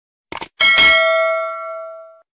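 Mouse-click sound effect, a quick double click, followed by a bright bell ding that rings out and fades over about a second and a half: the notification-bell sound of a subscribe-button animation.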